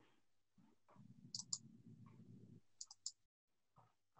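Near silence with a few faint, sharp clicks in two small groups, a pair and then three close together, typical of a computer mouse being clicked while volume settings are adjusted. A faint low hum lies under the first half.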